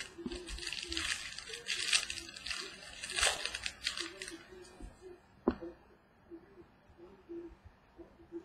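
Plastic wrapping being torn and crinkled off a trading card box for about four seconds, then softer handling with a single sharp click about five and a half seconds in.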